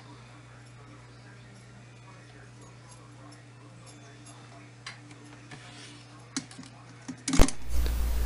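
Quiet room tone with a steady low hum while the joint is soldered, the soldering itself making no sound of its own. A few faint light ticks come in the second half, and a single sharp click near the end.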